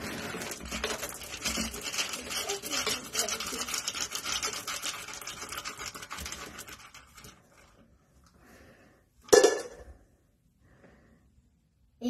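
Dry dog kibble rattling and scraping as a scoop digs through a plastic food bin, lasting about seven seconds. About nine seconds in comes a single short, loud sound.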